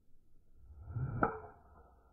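Golf driver swung through the air with a building whoosh, then a sharp click as the clubhead strikes the teed ball a little over a second in. A ringing tone lingers after the strike.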